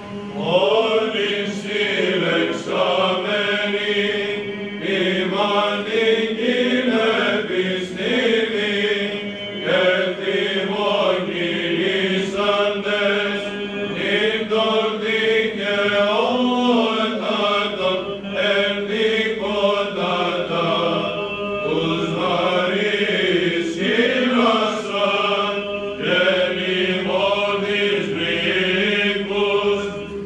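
Byzantine chant sung by a group of male chanters: an ornamented melody line moving in phrases over a steady held low drone (the ison).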